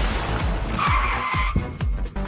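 Animated intro jingle: a rushing whoosh sound effect with a whistle-like tone that cuts off about three quarters of the way in, over electronic dance music with a steady kick-drum beat.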